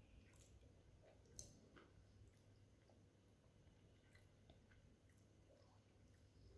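Near silence with faint chewing and small mouth clicks as a soft malai laddu is eaten; one slightly louder click comes about a second and a half in.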